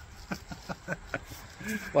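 A man's soft chuckling: a few short, breathy pulses of laughter. A voice begins talking near the end.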